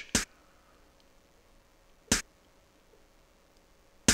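Soloed drum-style snare part on a Wersi OAX organ playing its newly exchanged 'Analog ClapSnare' electronic clap-snare sound: two sharp single hits about two seconds apart, once per bar of the pattern.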